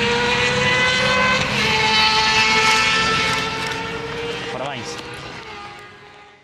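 Propeller aircraft engine running on the airfield, a steady drone that drops slightly in pitch about a second and a half in, then fades away toward the end. A brief voice is heard near the end.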